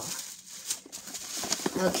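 Bubble wrap and plastic packaging rustling and crinkling in many short, irregular bursts as a hand digs through a cardboard shipping box.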